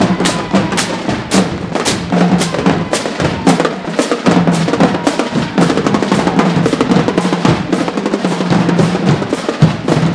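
A marching band drumline playing a fast cadence on snare drums, with rapid sharp strokes and rolls over lower drum beats.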